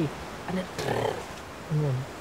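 A man speaking in a low voice in words the recogniser did not write down, with a short rough, noisy sound about a second in.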